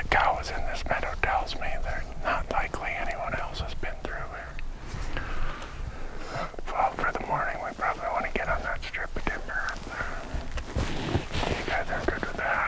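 Hushed, whispered conversation between a few people, with scattered small clicks.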